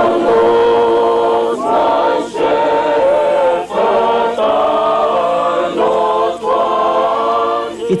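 A group of voices singing together in long held chords, in several phrases with short breaks between them.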